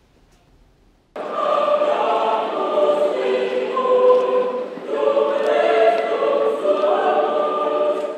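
A choir singing: many voices sustaining long held notes together. It starts abruptly about a second in, after near silence.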